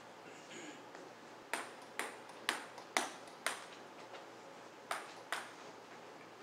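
Table tennis ball bouncing and clicking: five sharp ticks evenly spaced, about two a second, then two more close together near the end.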